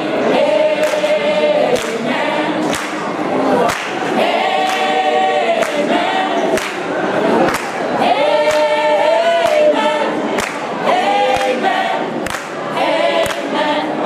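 Mixed choir of men and women singing together in harmony, holding chords, with hand claps on the beat about once a second.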